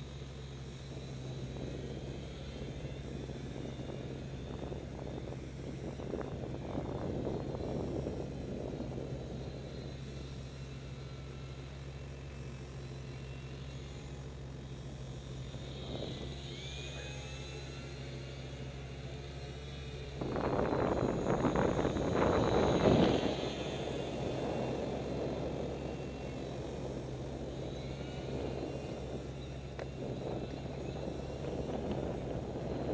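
Wind buffeting the microphone over a steady low hum, with a long, loudest gust about two-thirds of the way through. The faint whine of a micro RC plane's small electric motor and propeller comes through as it passes close overhead, its pitch falling about halfway through and rising again during the big gust.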